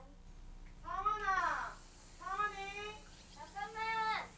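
A cat meowing three times, each call under a second long, the first rising and then falling in pitch.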